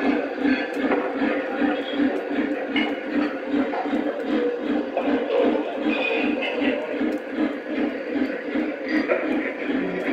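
Simulated steam-locomotive chuffing from the onboard sound system of a Lionel Legacy Big Boy O-gauge model, a steady beat of about three chuffs a second, over the running noise of the model train's wheels on the track.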